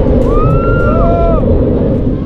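Wind buffeting a camera microphone as an amusement-park ride swings riders through the air, a dense low rumble throughout. A rider's high-pitched call rises and falls from about a quarter second to a second and a half in.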